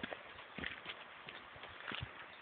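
Footsteps on a woodland dirt path: irregular short knocks over a steady hiss.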